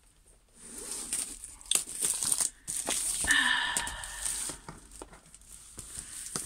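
Diamond-painting kit packaging being unwrapped by hand: crinkling and tearing of paper and plastic wrapping with sharp rustles, and a brief squeaky scrape of card sliding against card about halfway through.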